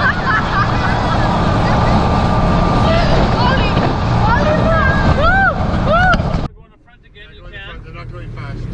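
Wind rushing over the microphone with a motorboat running at speed, people laughing and whooping over it. About six and a half seconds in the rush cuts off suddenly, leaving a much quieter sound with voices.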